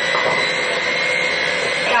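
Electric hand mixer running steadily with its beaters in a bowl of cookie dough, a continuous motor noise with a steady high whine.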